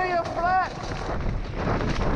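Wind rushing over a helmet camera and a downhill mountain bike rattling over a rough dirt trail at speed, with high shouted whoops in the first half-second or so.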